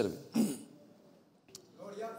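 A man clearing his throat once, briefly, about half a second in, between words of speech, followed by a short pause.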